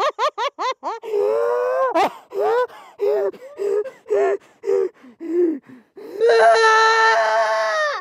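A man laughing hard in quick, rapid bursts that come more slowly as the fit goes on. About six seconds in comes a long, high, held vocal sound at one pitch, and it cuts off suddenly at the end.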